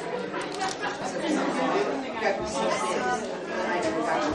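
Indistinct chatter of several people talking at once in a large room, with no single clear voice.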